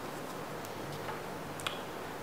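Quiet room tone with two faint short ticks about a second apart.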